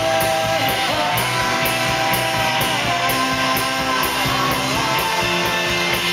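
Live rock band playing, with guitars strumming over a drum kit and a cymbal struck about twice a second.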